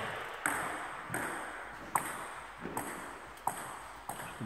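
Celluloid table tennis ball hitting hard surfaces: about five sharp, hollow pings, evenly spaced about three-quarters of a second apart.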